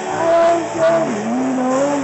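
A live rock band playing, picked up by a camera microphone that struggles with the volume, with a held note sliding down and back up in pitch.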